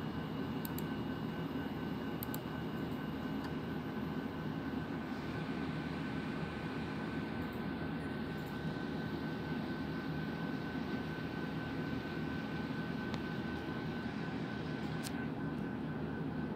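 Steady low background hum with a faint, constant high whine running through it. A couple of faint clicks come in the first few seconds.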